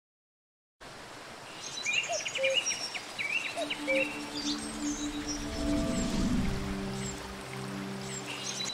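After a second of silence, a nature soundscape begins: birds chirping repeatedly over the steady hiss of running water. About three seconds in, soft sustained music tones join it, with a low whoosh around six seconds.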